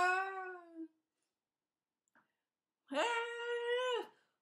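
A woman's voice wailing long, held open-mouthed vowels: one note that fades out just under a second in, then after a pause a second, higher note from about three seconds in that cuts off at the end.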